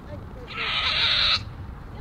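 Nigerian Dwarf goat giving one harsh, breathy bleat a little under a second long, starting about half a second in.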